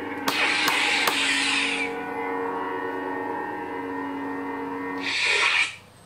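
Proffie-board lightsaber sound font playing from the hilt's speaker: a steady electric hum, with noisy swing sounds and a few sharp clicks in the first two seconds. Near the end a louder rushing swell as the blade is switched off, and the sound cuts off suddenly.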